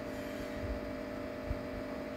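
Steady hum of an electric water-pump motor running, a few even tones held without change, with one faint low bump about one and a half seconds in.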